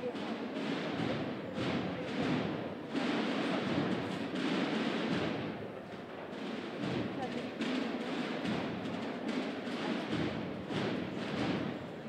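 Murmur of a street crowd, with drumbeats and music from a procession band underneath.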